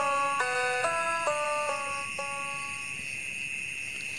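Background music of struck, chiming notes, about two a second and stepping downward, fading out about three seconds in. Under it runs a steady high chirr of crickets.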